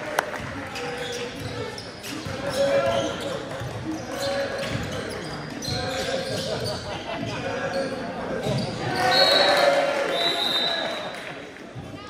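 Basketball game in a school gymnasium: the hall echoes with players and spectators talking and calling out, the ball bounces on the hardwood, and there are short sharp knocks. The voices get louder about nine seconds in.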